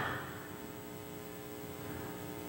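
Faint steady electrical hum with several held tones, over low room noise, as the tail of the voice's echo dies away at the start.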